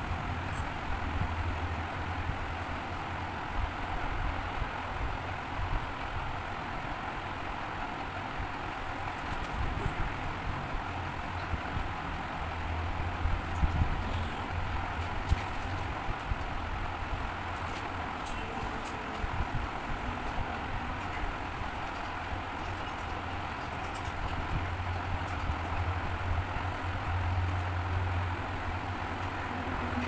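Steady background rumble and hiss with a low hum, with a few faint clicks scattered through the middle.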